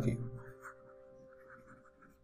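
Faint scratching and tapping of a stylus writing a word on a tablet screen, over a faint steady hum. A spoken word ends at the very start.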